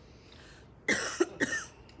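A man coughing twice, two sharp coughs about half a second apart, starting about a second in.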